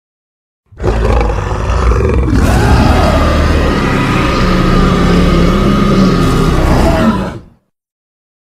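A giant ape monster's roar, an edited creature sound effect, deep and loud. It holds as one long call for about six and a half seconds, starting just under a second in and cutting off near the end.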